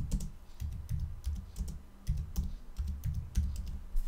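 Typing on a computer keyboard: an uneven, quick run of key clicks with dull low thuds as a short sentence is typed.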